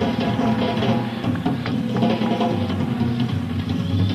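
Rock drum kit played as a live drum solo, heard on a raw bootleg tape recording, with sustained low tones running underneath the hits.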